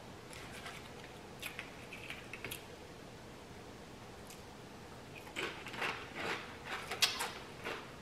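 Close-up crunching of a crisp tortilla chip being chewed. A quick run of sharp crunches starts about five seconds in, after a few faint clicks.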